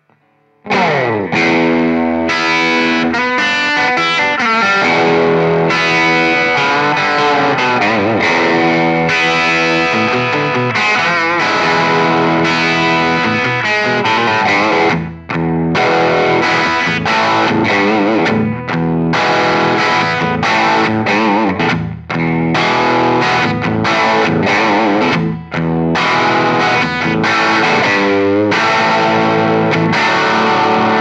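Electric guitar played continuously: a 2015 Gibson Les Paul Junior with its single P-90 pickup, through a 1970s silverface Fender Deluxe Reverb and a Bad Cat Unleash. It comes in about a second in with a falling glide in pitch, then runs on with a few short breaks.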